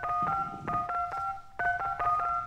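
Telephone keypad dialing tones: a quick run of about eight short two-tone beeps with a brief pause about a second and a half in, as a number is dialed.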